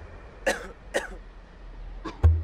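Two short human coughs, about half a second apart.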